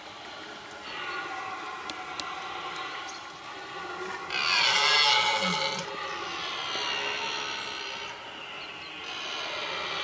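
Red deer stag roaring (belling) during the rut: a run of long, drawn-out calls, the loudest about four seconds in.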